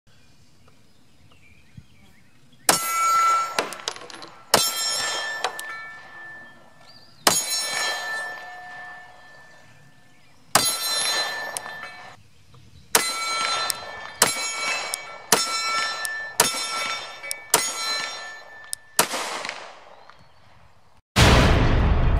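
A 9 mm Glock 48 pistol fired about a dozen times in single shots, spaced a second or more apart, most shots followed by a ringing ding of a struck steel target. Near the end, loud intro music starts with a heavy low hit.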